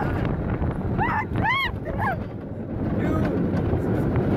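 Wind rushing over the microphone and the rumble of a moving roller coaster, with riders' short, high-pitched yells about a second in.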